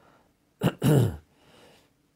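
A man clearing his throat once: a short sharp catch, then a rasping voiced sound that falls in pitch.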